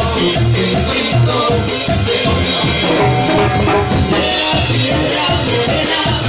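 Live Mexican banda music: a drum kit with cymbals keeps a steady beat over a bass line and brass, in an instrumental passage without singing.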